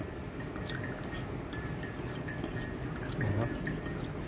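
Metal teaspoon stirring a drink in a ceramic mug, clinking lightly and repeatedly against the sides.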